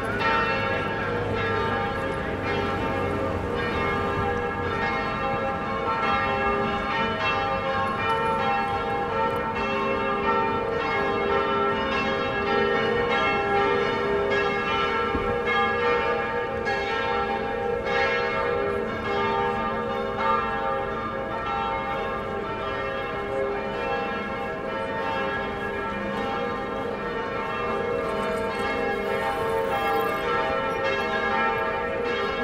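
Several church bells ringing together in a steady, unbroken peal.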